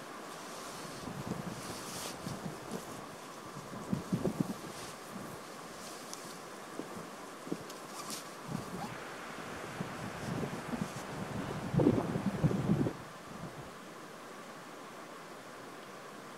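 Wind buffeting the microphone, mixed with rustling and footsteps on dry grass and pine needles as a person moves about, sets down a backpack and sits. A louder burst of rustling comes about twelve seconds in and lasts about a second.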